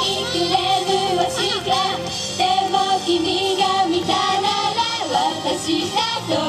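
Upbeat Japanese idol pop song over the stage sound system, with the group's young female voices singing the melody over a backing track.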